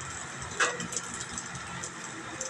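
Burger patties sizzling on a flat-top griddle over a steady mechanical hum, with a brief sound falling in pitch about half a second in.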